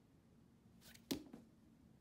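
Handling noise from a boot being turned over in the hand: one sharp tap about a second in, with a brief rustle just before it and a fainter tap just after.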